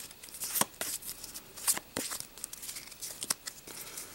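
Pokémon trading cards being slid and shuffled by hand, from the back of the stack to the front, in a run of short papery clicks and rustles.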